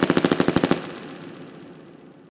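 Machine-gun sound effect: a rapid burst of about fifteen shots a second that stops about three quarters of a second in, followed by a fading echo.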